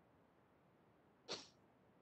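Near silence: quiet room tone, broken by one short, faint noise about a second and a quarter in.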